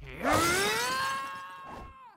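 Cartoon sound effect of a character dashing off: a rushing whoosh under a pitched tone that rises over about a second, then holds and fades away near the end.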